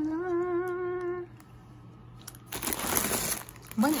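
A person hums one held, slightly wavering note for about a second. Then plastic-wrapped instant noodle packets crinkle as they are shifted about in a cardboard box.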